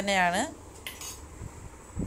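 A spoon clinking against the cooking pan: a sharp clink about a second in and another brief knock at the very end, after the last words of a woman's voice.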